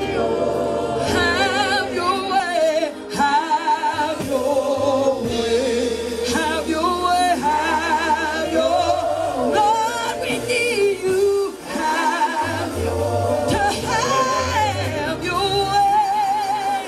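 Gospel choir of women singing into handheld microphones, voices held on long notes with vibrato, over sustained low bass notes from the accompanying band.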